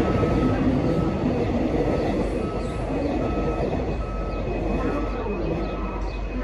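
An electronic reversing beeper sounding a short, steady tone about once every 0.8 seconds, over the low rumble of station and rail noise.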